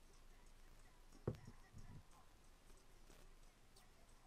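Near silence, broken about a second in by one short, sharp low thump, followed half a second later by a softer one.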